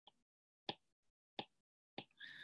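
Faint taps of a stylus on a tablet's glass screen while handwriting, a few short clicks about two-thirds of a second apart.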